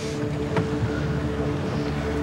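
Steady drone of a boat's engine heard inside the wheelhouse, a low hum with a few even tones over a wash of noise.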